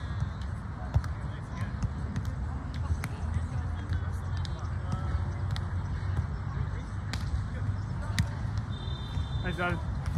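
A volleyball being struck by hands on an outdoor sand court: a few sharp slaps, the loudest about a second in, over distant voices of players and a steady low rumble.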